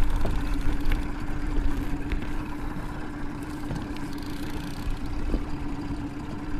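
A boat motor running with a steady, even hum, over a low rumble of wind on the microphone.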